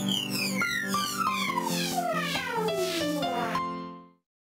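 Playback of a grand piano melody in FL Studio Mobile with a sweeping sound-effect sample that falls steadily in pitch over it. The music stops about three and a half seconds in and rings off briefly.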